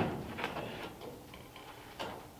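Light knocks from a person shifting on a plywood mock-up car seat: a sharp knock at the start and a lighter click about half a second later, then quiet shuffling.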